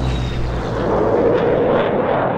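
Propeller aircraft with a piston engine: a loud, low engine drone that fades about halfway through under a rushing noise of the aircraft going past.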